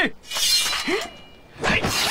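A sudden crash with a shattering, breaking quality that tails off over about half a second, then a brief cry. Near the end comes a louder rush of sound heavy in the low end.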